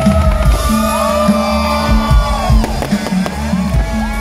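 Live pop music played loud through a concert PA, with held and gliding tones over a steady bass line.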